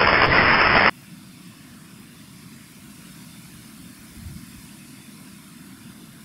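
Loud roar of a large fireball going up. It cuts off suddenly about a second in, leaving only a faint hiss and low rumble.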